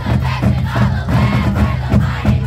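Marching band drums keeping a steady beat while a large group of voices chants and shouts together over it.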